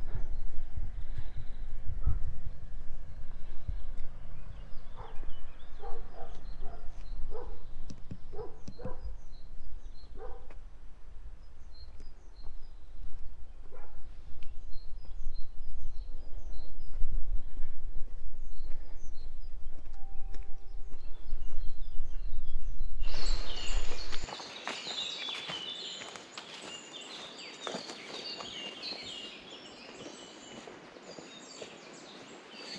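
Walking outdoors with a steady low rumble on the microphone, scattered footsteps and faint bird calls. About 23 seconds in, it cuts to many birds singing and chirping in a leafy forest.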